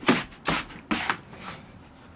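Handling noise from a plastic container and a soda bottle rubbing and knocking against the hand-held phone as they are carried. Three short scuffs come about half a second apart, then it goes quieter.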